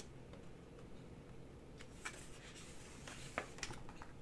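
A picture book's paper page being turned by hand and smoothed flat: a few soft rustles and taps in the second half, the loudest a little before the end, over a faint room hum.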